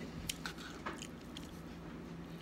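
Close-up chewing with wet mouth smacking and a few sharp clicks, over a steady low hum.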